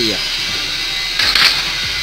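Steady background noise with a short hissing burst a little past a second in.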